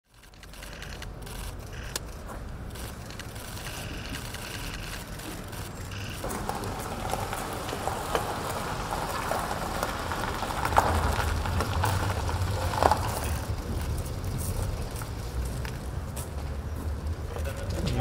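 A black Mercedes saloon rolling slowly over gravel and pulling up, its engine running low under the crunch of the tyres. A few sharp clicks and knocks come through around the middle.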